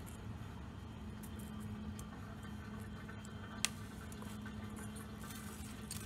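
Dishwasher drain pump running with a steady low hum, and a single sharp click about three and a half seconds in.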